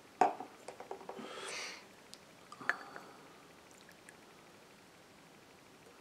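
Glassware handled while tea mix is poured: a sharp knock of glass just after the start and a few small clicks, then a short pour of liquid about a second and a half in. Near three seconds comes a single glass clink that rings briefly, and after that only faint room noise.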